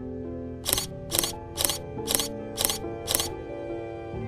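DSLR camera shutter firing six times, about two clicks a second, over background music.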